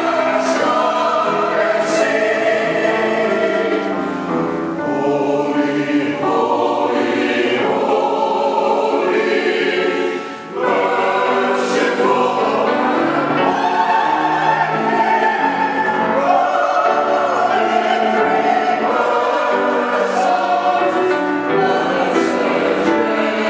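Mixed-voice church choir of men and women singing in sustained phrases, with a brief break between phrases about ten seconds in.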